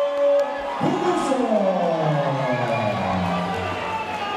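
A ring announcer's voice drawing out one long call, its pitch falling slowly over about three seconds, over crowd cheering and music in a hall.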